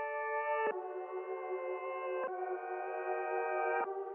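Ambient synth chords from a reFX Nexus preset, processed with Gross Beat, detune-and-wobble and Little Radiator warmth plus an EQ. The held chords shift to a new chord about every one and a half seconds, all in the middle range with no bass or highs.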